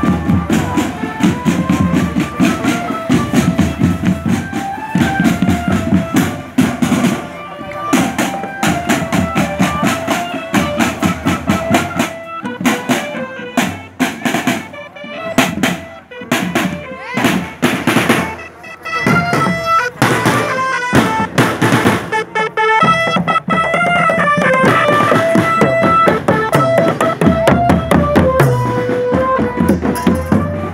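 Marching drum band playing: a melody of held, stepping notes over beats on snare drums, marching drums and bass drum, with the drum strokes most prominent through the middle.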